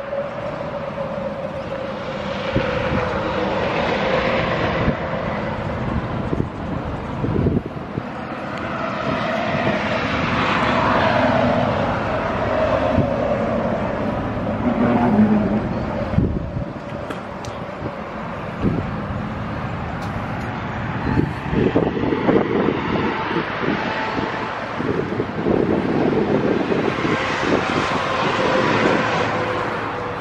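Outdoor road-traffic noise with vehicles swelling past and fading, over a steady hum.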